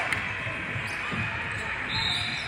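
A basketball bouncing on a hardwood court during live play, over a steady din of voices echoing in a large gym.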